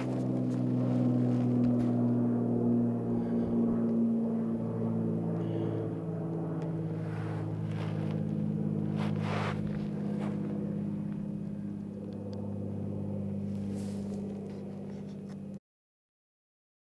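A steady, droning engine hum made of several low pitched tones, shifting slightly in pitch about halfway through, with a brief scrape a few seconds later; the sound cuts off abruptly near the end.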